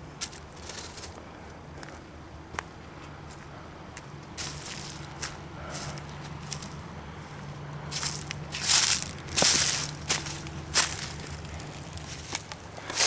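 Footsteps through dry fallen leaves on the forest floor: soft scattered rustles and crackles, becoming louder and more frequent in the last few seconds.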